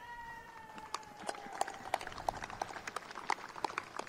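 Scattered applause from a small crowd, with loose individual hand claps rather than a dense roar. In the first second and a half a faint held tone sinks slightly in pitch and fades.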